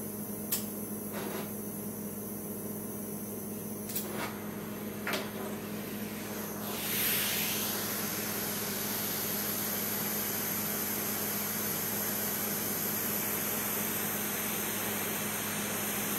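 Kitchen blowtorch being relit after its flame went out: a few sharp igniter clicks in the first five seconds, then a rush as the gas catches about seven seconds in, settling into the steady hiss of the burning flame.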